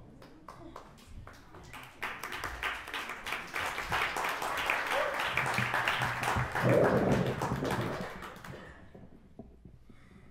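Small audience applauding as the next singer comes on, the clapping building over the first two seconds, holding strong, then dying away near the end, with a voice or two calling out in the middle.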